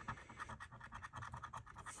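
A coin scraping the scratch-off coating from a lottery scratcher ticket in quick, short, faint strokes.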